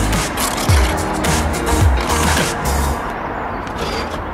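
Background pop music with a steady beat and deep bass notes that slide down in pitch about once a second.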